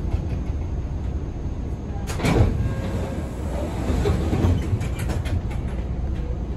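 Hawker Siddeley-built 01200-series Orange Line subway car running, heard from inside the car as a steady low rumble. About two seconds in, a louder burst of rattling noise rises and fades away over the next few seconds.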